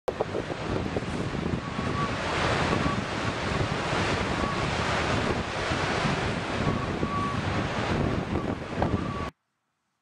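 Wind buffeting the microphone over rough, breaking waves: a steady rushing noise that cuts off suddenly about a second before the end.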